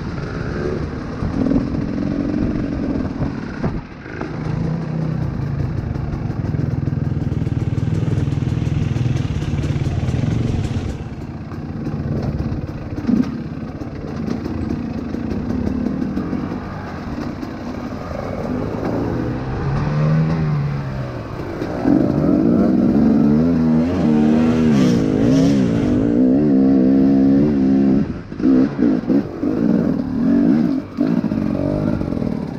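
Dirt bike engine running throughout, its pitch rising and falling as the throttle is worked. It is louder and revs more busily in the last third.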